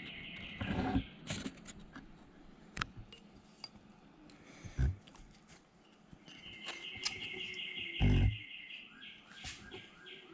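Scattered light metallic clicks and taps from the camshaft and crankshaft gears in an open VW air-cooled engine case half being turned and handled by hand, with a heavier thump about eight seconds in. A bird trills in the background in the second half.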